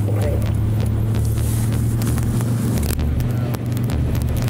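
Steady low drone of a car's engine and road noise, heard from inside the moving car.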